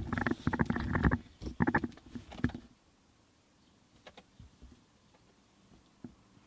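Handling noise from a handheld camera being moved about: rustling and rubbing with a few bumps for about two and a half seconds, then near quiet with a few faint clicks.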